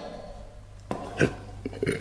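A man's short burp about a second in, over a faint steady hum.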